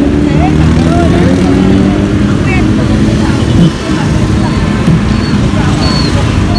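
Roadside street ambience: a steady rumble of motorbike and road traffic, with people talking in the background.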